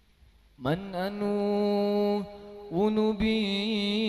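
Male sholawat chanting on a long held note: after a brief hush the voice slides up into a steady tone about half a second in, drops out briefly around two seconds, then comes back in and holds.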